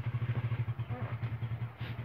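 A small engine running with a rapid, even low pulse of about a dozen beats a second.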